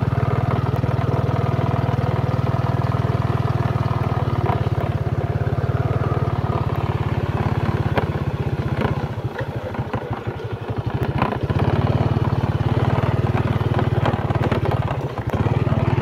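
Small motorcycle engine running steadily as the bike is ridden along a rough dirt track. It eases off for a couple of seconds a little past the middle and briefly again near the end.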